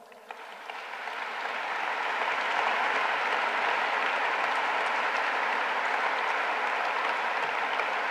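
Audience applauding, building up over the first two seconds and then holding steady.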